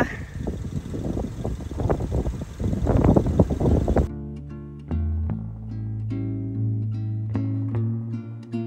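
Wind buffeting the microphone with an irregular rushing noise, then, about four seconds in, it cuts off abruptly and background music begins: plucked guitar notes over steady bass tones.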